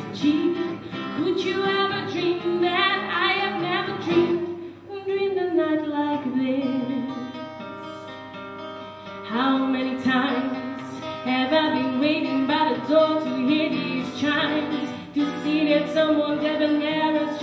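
A woman singing a pop ballad into a microphone over a strummed acoustic guitar, performed live. About a third of the way in the music drops to a softer, held passage, then voice and guitar build up again.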